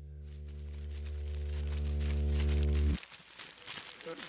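A low, steady sustained tone played backwards: it swells louder for about three seconds, then cuts off abruptly, the reversed attack of a decaying note. Faint crackle follows near the end.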